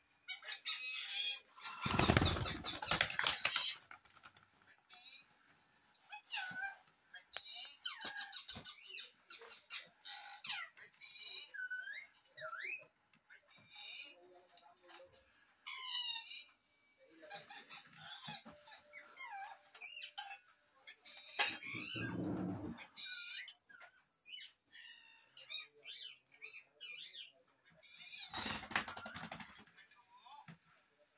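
Rose-ringed parakeet making a run of short squeaky calls that glide up and down in pitch. Loud bursts of wing flapping come near the start, past the middle and near the end.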